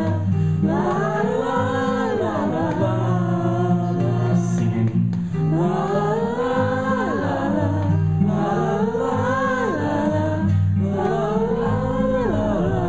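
Acoustic guitar strumming chords under voices singing a wordless "la la la" chorus together, the audience joining the singer in phrases of about two seconds that rise and fall.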